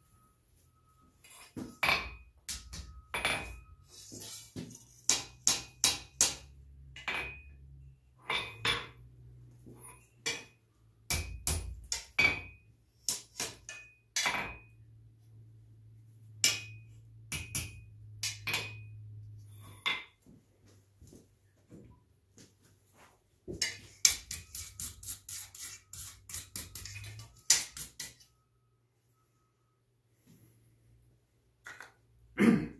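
Hand hammer striking a hot steel bar on an anvil, each blow with a short metallic ring. The blows come irregularly, stop for a few seconds, then come in a fast run near the end.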